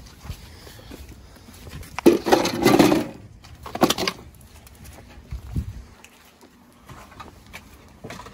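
Plastic car trim panels being handled and set down, a clattering rustle of about a second starting two seconds in, a shorter clatter near the middle and a soft knock after.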